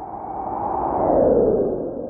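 Synthesized swell from a title-sequence sound effect: it builds up, peaks about a second and a half in with a falling sweep in pitch, then starts to die away into a lingering tone.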